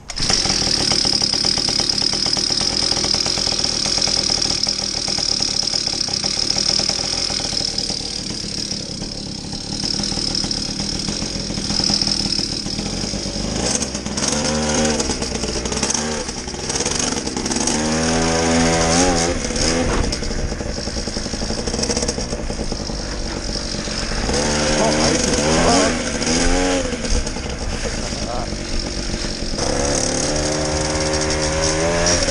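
Small 50cc two-stroke engine of an Evo 2x stand-up scooter running loudly with a high whine, then from about halfway through revving up and down again and again as it accelerates and eases off.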